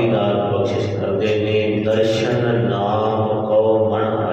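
A man's voice chanting a Gurbani hymn in long held, gently wavering notes, in the style of Sikh kirtan.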